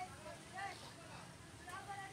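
People talking, the words not clear: voices of a busy market.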